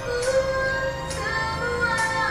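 A woman singing long held notes over a band accompaniment: a pop ballad given a rock arrangement with guitars.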